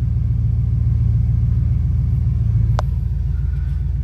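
1967 Dodge Coronet's engine idling steadily with an even low pulsing rumble, heard from inside the cabin; the owner says the motor needs help. One sharp click sounds a little under three seconds in.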